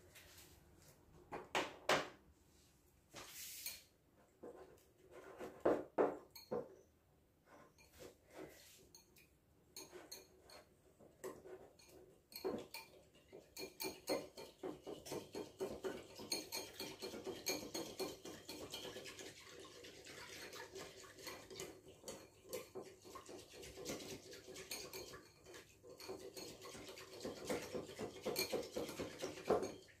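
Wire whisk beating milk with cornflour and custard powder in a ceramic bowl, its wires clicking rapidly against the bowl. A few separate knocks come first, then steady fast whisking from about twelve seconds in, which stops at the end.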